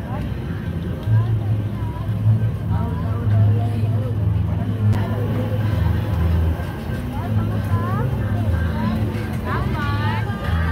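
Busy outdoor market: people talking over a steady low rumble.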